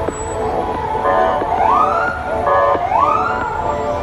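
Fire apparatus siren giving two short rising whoops about a second and a half apart, each preceded by a brief blast.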